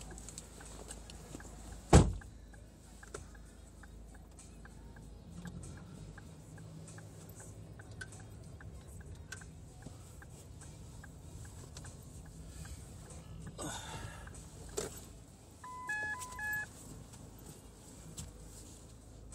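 A car door slams shut about two seconds in as the passenger gets out of the minicab. The car's engine then runs low and steady as it pulls away. Near the end come a few short electronic beeps in two pitches from a device in the cab.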